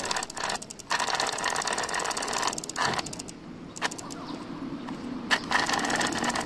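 Bicycle chain being run through a clip-on chain-cleaning box as the cranks are turned: rapid, steady clicking and rasping from the chain and drivetrain, in several spells with short pauses between them.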